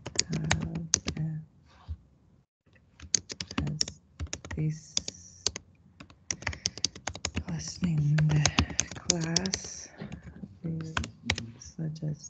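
Typing on a computer keyboard: rapid keystrokes in bursts, with a brief quiet gap about two seconds in.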